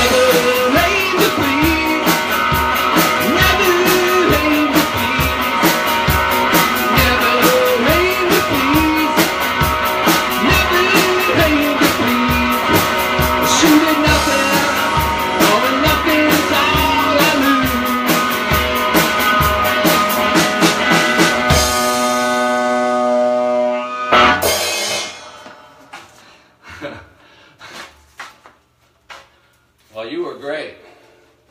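A live rock band plays: electric guitar, drum kit and a man singing, in a steady driving beat. The song ends about 22 seconds in on a held chord, with a final loud crash about two seconds later, and the guitar then rings out and fades. The guitarist says afterwards that his guitar was possibly a little out of tune.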